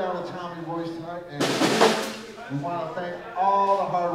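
A man's voice talking, broken about a second and a half in by a short burst on a drum kit lasting under a second.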